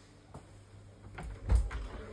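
An interior door being shut: a few light clicks, then a heavy thump about one and a half seconds in.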